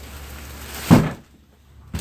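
A single solid thunk about a second in from the hinged lift-up king bed base being handled, with a short ring after it, over faint background hiss.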